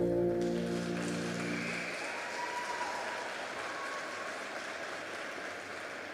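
The final held chord of the program music fading out over the first two seconds, while applause from a small audience starts about half a second in and carries on.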